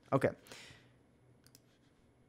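A short spoken 'okay', then a few faint clicks from working a computer, the kind made by keys or a mouse.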